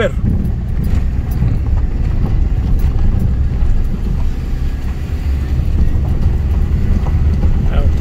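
Car driving slowly over a rough, broken road surface: a steady low rumble of engine and tyres with faint scattered knocks.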